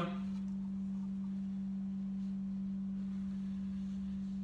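A steady low hum at one even pitch, with no other sound.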